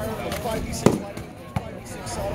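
Two sharp smacks of foam-padded sparring swords striking padded shields: the first, louder one just under a second in, the second about 0.7 s later.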